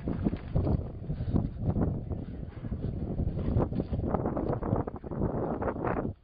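Wind buffeting the camera microphone, with rough rumbling handling knocks from a hand-held camera being carried on the move. The noise stops abruptly at the end.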